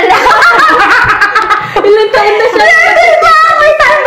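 Several young women laughing and giggling together, with snatches of excited chatter mixed in.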